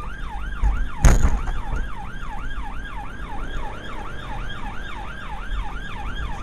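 Police car siren in fast yelp mode, its pitch rising and falling about three times a second, over the engine and road rumble of the pursuing car. There is a sharp thump about a second in.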